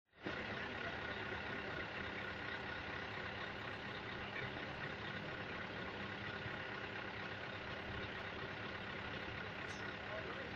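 Scania R450 truck's diesel engine idling steadily, an even low running sound with unchanging pitch.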